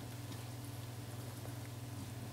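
Wooden spatula stirring beetroot and chickpea stir-fry in a pan, faint soft scrapes and a few light ticks over a steady low hum.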